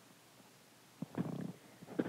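Near silence, then about a second in a click and a brief low murmur from the voice, just before speech resumes.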